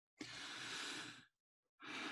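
A person taking two long, deep breaths close to the microphone, each about a second long, with the second beginning near the end. They are slow, deliberate breaths taken with eyes closed just before a prayer.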